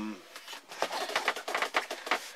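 A quick run of light clicks and taps, closely spaced, as the wire and metal parts of a homemade flat-top mole trap are handled and set down on a wooden table.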